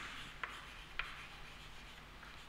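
Chalk writing on a chalkboard: faint scratching strokes, with three light taps of the chalk against the board in about the first second.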